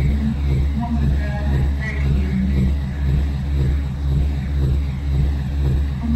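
Music with a heavy, steady pulsing bass and a repeating rhythm, with scattered higher pitched sounds over it.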